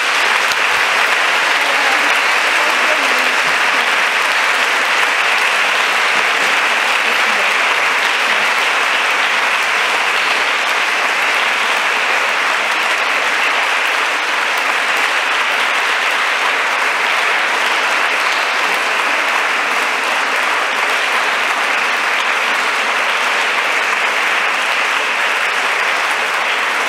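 Sustained applause from a large audience, steady and loud throughout.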